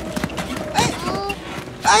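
Voices calling out, with a loud shout of "ê" near the end, over quick, irregular footsteps on a dirt track.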